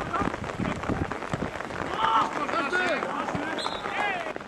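Shouts and calls from players and spectators at an amateur football match, several short raised voices overlapping, loudest about halfway through.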